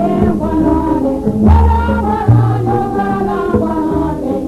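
Recorded music by a Guinean instrumental ensemble: a group of voices sings together over the instruments. Long low bass notes return in a repeating figure, about two held notes every few seconds.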